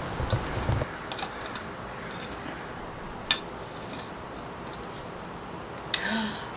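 Handling noise of small objects being moved and set down: a low thump in the first second, then scattered faint clicks with one sharp click about three seconds in, over a steady background hiss.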